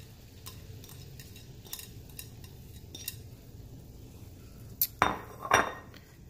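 Light clicks and taps of a bowl and utensil as chopped cilantro is scraped into a pan of liquid, then a louder clatter of dishes about five seconds in, over a low steady hum.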